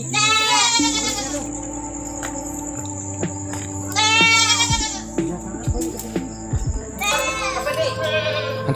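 Goats bleating: two long cries, one at the start and one about four seconds in, over a steady droning music bed.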